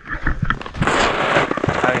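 Snowboard scraping and side-slipping through deep powder, with dense crunching and crackling of snow close to the camera.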